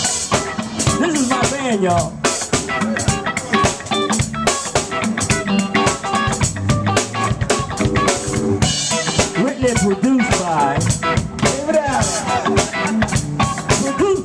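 Live band playing through a PA: drum kit with snare and bass drum, electric guitar and keyboard, with a man singing into a microphone.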